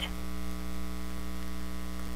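Steady electrical mains hum picked up by the recording: a constant low buzz with many even overtones.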